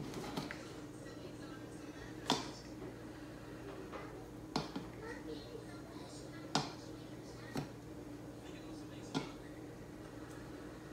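Five light clicks and taps, spread out with gaps of one to two seconds, from a hand and raw shrimp knocking against a ceramic bowl and plates while the shrimp are dipped in egg and flour, over a faint steady hum.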